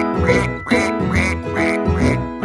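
Duck quacks repeated about twice a second over the music of a children's song.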